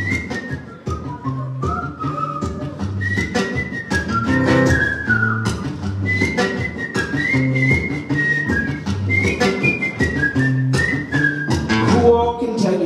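A man whistling a melody into the microphone over a strummed acoustic guitar. The whistle is a single clear line that steps up and down in pitch, in phrases with short breaks.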